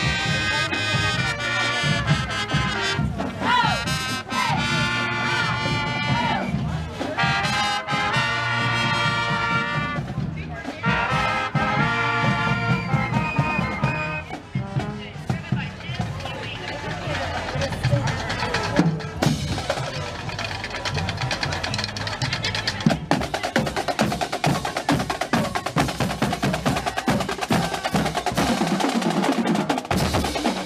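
Marching band playing in a street parade: brass carrying a tune over drums for roughly the first half, after which the brass falls away and the drums keep beating a steady cadence.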